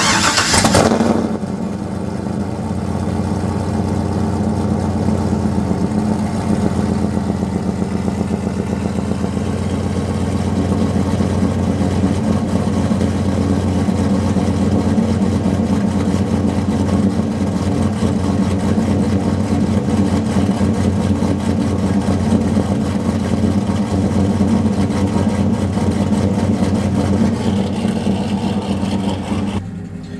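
Pickup truck's engine cold-starting, with a brief loud burst as it fires right at the start, then idling steadily through its exhaust.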